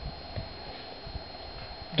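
A pause between words: faint outdoor background hiss with a thin, steady high-pitched whine and a few soft, low taps.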